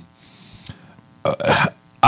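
A quiet pause in conversation, then a man's short hesitant "uh" about a second and a quarter in.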